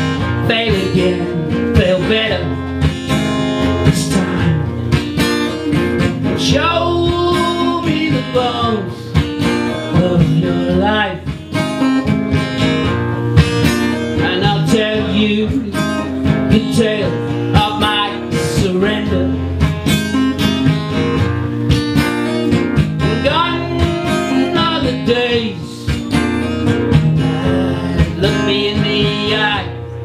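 A man sings a folk-style song while strumming an acoustic guitar. The strumming runs steadily throughout, and sung phrases come and go over it.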